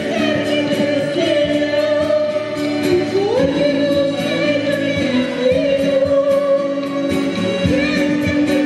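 A woman singing a Brazilian música raiz song live, holding long notes with a rising glide about three seconds in, accompanied by strummed acoustic guitars and an accordion.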